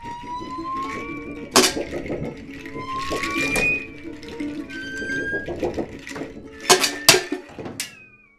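Live music on homemade junk instruments: sliding tones rising in pitch float over a steady low drone. A sharp percussive strike comes about a second and a half in, and two more come close together near the end.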